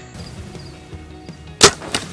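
Soft background music, then the sharp crack of an arrow striking a buck about one and a half seconds in, followed by a second, smaller crack as the deer bolts.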